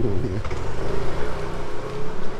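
A motor scooter's small engine running steadily as it passes close by.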